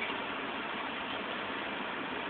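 Steady, even hiss of outdoor background noise.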